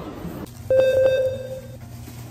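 A single electronic beep: one steady tone, starting just under a second in and held for about a second.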